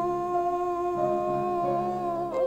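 A woman singing a hymn solo, holding one long steady note over organ accompaniment, whose chord changes near the end.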